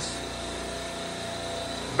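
Steady hum of a supermarket R22 parallel compressor rack running in its machine room, with only three of its compressors called on.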